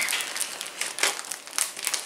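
Thin plastic mailer bag crinkling and rustling as it is cut open with scissors, with a sharper crackle about a second in.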